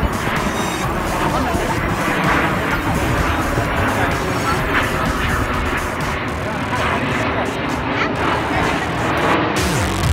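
A formation of aerobatic jets flying over, giving a steady engine noise mixed with crowd voices and music.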